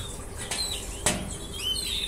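Faint short chirps and whistles of small caged songbirds in a canary breeding room, with one sharp knock about a second in.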